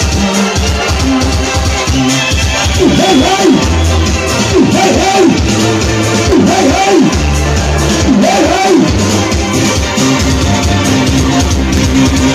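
Loud live music from an electronic keyboard, played through PA loudspeakers, with a steady beat. In the middle there is a run of sliding, swooping tones about once a second.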